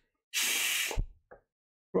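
A person's hissing breath, a sharp 'sss' lasting well under a second, ending in a short low thump.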